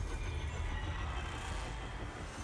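Movie-trailer car-chase soundtrack: a steady, low vehicle rumble.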